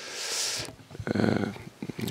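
A man breathes into a close microphone, a breathy rush lasting about half a second. About a second in comes a brief low murmur of hesitation with small mouth clicks.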